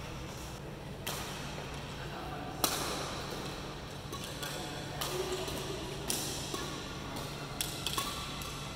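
Badminton rackets hitting shuttlecocks in a feeding drill: about five sharp hits a second or so apart, the loudest about two and a half seconds in, over a steady low hum.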